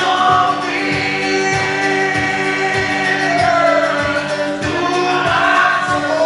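A male singer singing long held notes to his own steadily strummed acoustic guitar, live.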